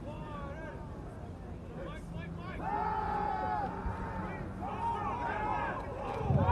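Distant voices around a football field shouting and calling out, with one louder drawn-out shout about three seconds in, over a steady low hum.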